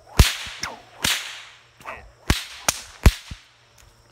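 A bullwhip cracking about five times in quick succession over three seconds as it cuts apart a goldenrod stalk held up in the air. The first and last cracks are the loudest.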